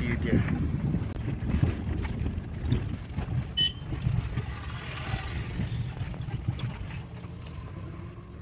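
Car cabin noise while driving: a steady low rumble of engine and road heard from inside the car.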